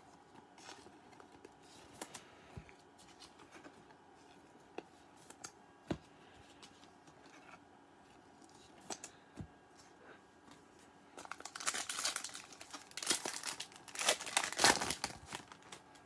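A trading-card pack's wrapper being torn open and crinkled in a run of crackly bursts over the last few seconds, after a stretch of faint, scattered clicks.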